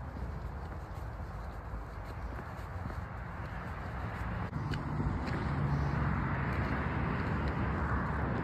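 Footsteps on a dirt trail over the steady noise of road traffic, which grows louder about halfway through.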